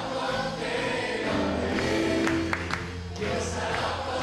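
A group of female and male singers with microphones singing a worship song together, with guitar accompaniment.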